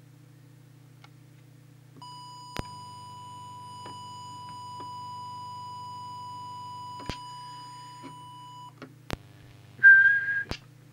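Steady 1 kHz test tone from an audio oscillator, used to set the CB transmitter's FM deviation. It starts about two seconds in and stops shortly before the end, over a low steady hum, with a few sharp clicks. Right at the end a short whistle begins.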